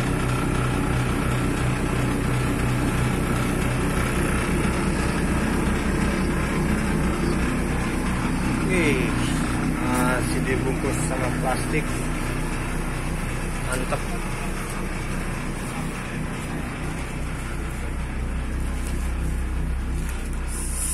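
A bus's diesel engine idling steadily, heard from inside the passenger cabin, with people's voices in the background.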